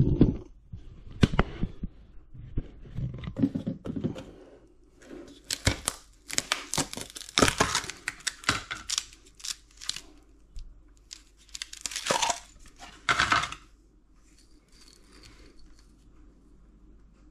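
A frozen plastic food tub being flexed and twisted to free a block of ice, with bursts of crackling and sharp cracks from plastic and ice, thickest through the middle and loudest a couple of seconds before the end. A handling knock comes at the very start.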